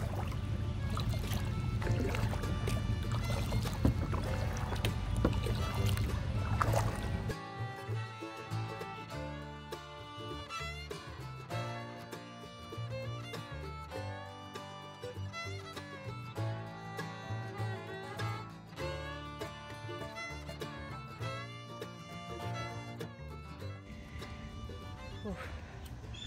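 Wind rumbling on the microphone with water noise as a kayak is paddled, for about seven seconds; then instrumental background music takes over, with a steady repeating beat.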